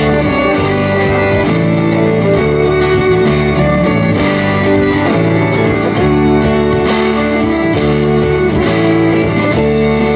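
Instrumental intro of a country song played live: steel-string acoustic guitar strumming chords, with a fiddle playing over it.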